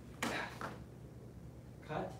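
Feet landing hard on interlocking foam floor mats from a jumping kick, a sudden thud about a quarter second in. A second, shorter sound follows near the end.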